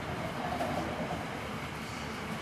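Steady background hum and hiss of room noise in a pause between speech, with no distinct event.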